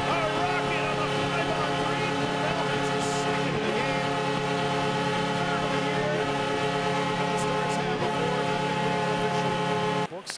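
Hockey arena goal horn blowing one long, steady chord that signals a home-team goal, cutting off abruptly near the end.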